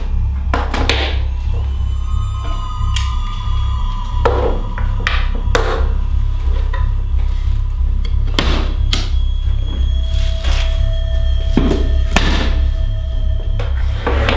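Tense film score: a steady low drone under long held high tones, punctuated by about ten heavy hits at irregular intervals.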